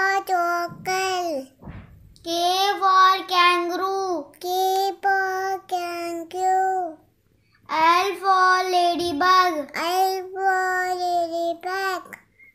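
A child's voice singing the alphabet phonics rhyme, letter by letter in short repeated phrases on a near-steady pitch, with a brief pause about seven seconds in.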